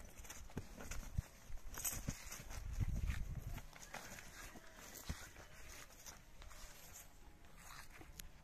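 A heavy draft mare moving and cropping grass close by: scattered soft clicks and thuds from her hooves and mouth, with a low rumble about three seconds in.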